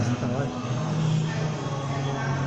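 Music and voices over a steady low drone of held tones, continuing the chant-like music and drawn-out sung syllables heard around it.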